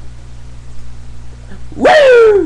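A low steady room hum, then near the end a loud, high-pitched Ric Flair-style 'Woo!' yell, its pitch falling away.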